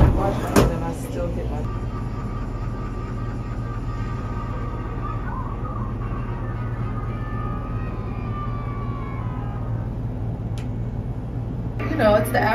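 Steady low mechanical hum inside an enclosed Ferris wheel gondola, with two sharp knocks right at the start and faint voices or music in the background.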